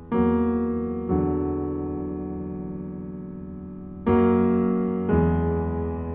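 Piano music: four chords struck in two pairs, the chords in each pair about a second apart, each left to ring and fade.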